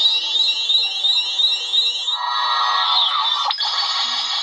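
Xenopixel lightsaber sound board playing its colour-change effect through the hilt speaker: a really loud electronic chirp rising in pitch, repeating several times a second. About halfway through it gives way to a different steady electronic tone, with a sharp click near the end.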